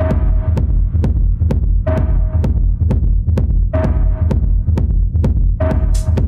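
Dark techno with a heavy, throbbing bass and a sharp percussion hit about twice a second. A brighter, swelling layer with a short held tone comes back roughly every two seconds.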